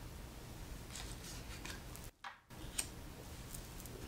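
Faint clicks and slides of cards being drawn from a fanned deck and laid on a wooden tabletop, over a low steady hum. The sound cuts out briefly just after two seconds in.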